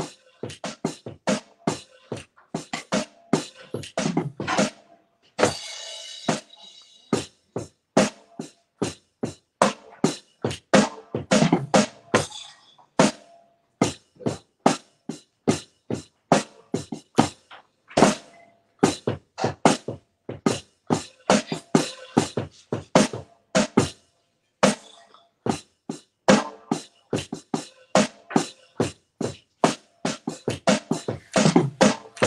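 Drum struck by hand in a slow, steady groove, about two to three sharp hits a second, the sound dropping out to silence between many strokes. A brief hissing wash sounds about six seconds in.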